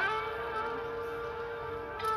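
Background music: a flute slides up into one long held note and sustains it with a slight waver.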